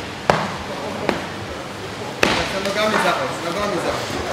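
Sharp smacks of strikes landing during MMA gym training, irregularly spaced, with two louder hits about a third of a second in and just past two seconds. Indistinct voices are in the background.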